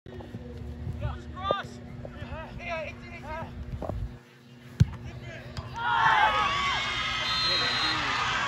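Outdoor soccer game sounds: scattered shouts from players, then a single sharp thump of the ball about five seconds in. From about six seconds, spectators and players break into a burst of cheering and yelling as the goal goes in.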